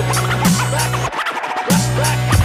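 Hip hop beat with DJ turntable scratching: quick back-and-forth record cuts sliding in pitch over the drums and bass. Just past halfway the bass and kick drop out for about half a second, then come back in.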